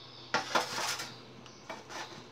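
Metal kitchen utensils clinking and scraping: one burst about a third of a second in that lasts over half a second, and a lighter knock near the end.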